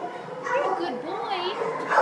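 Kennelled shelter dogs whining and yipping, with wavering high-pitched cries that rise and fall.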